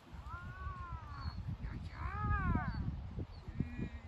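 A dog vocalising excitedly during play: two drawn-out calls that rise and fall in pitch, then a shorter one near the end, over low thuds of movement.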